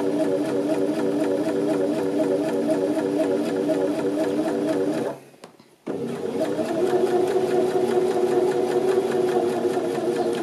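Janome 725s Sewist electric sewing machine stitching steadily at an even pace, sewing a second row of straight stitching along a folded narrow rolled hem in calico. It stops briefly about five seconds in, then runs on.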